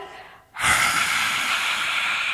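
A woman's long, forceful whispered 'haaa' exhaled through a wide-open mouth with the tongue out: the release of a yoga lion's breath. It starts about half a second in, after a brief pause.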